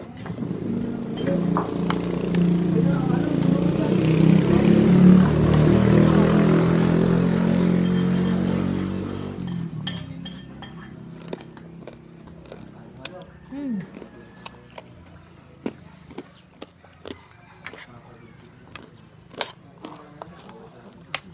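A motor vehicle passes by, its engine growing louder for about five seconds, then fading away by about nine seconds in. After it, light clinks of a metal fork and spoon against a plate.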